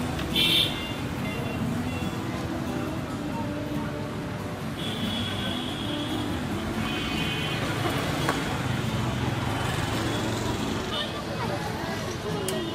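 Busy street ambience: traffic running, people talking, and the hiss of spiral-cut potatoes deep-frying in a pan of oil. A short, loud high-pitched tone sounds about half a second in, and further high tones come and go, the longest lasting about a second.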